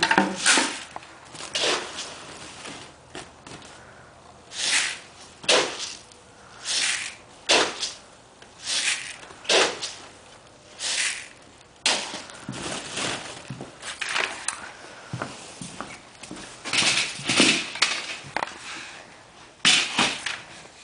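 Scoopfuls of grain feed being dug out of a sack and poured into plastic buckets: a string of short rushing pours, roughly one a second, with the rustle of the sack between them.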